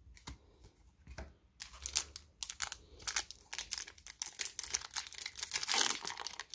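Foil booster-pack wrapper of a Magic: The Gathering pack crinkling and being torn open. It starts with a few soft clicks, then becomes a dense crackle about a second and a half in and grows louder near the end.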